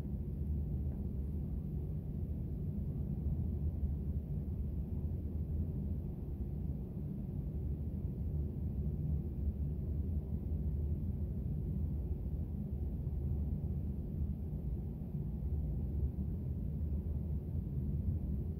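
Steady low hum and rumble of room background noise, even throughout with no distinct events.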